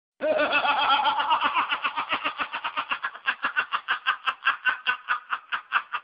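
A man laughing hard in one long, unbroken string of quick pulses, about six a second, starting loud and voiced and going on without a pause.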